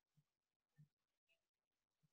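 Near silence: a pause in a video call with no audible sound.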